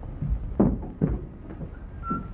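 A woman's heeled footsteps across a floor, short taps about half a second apart.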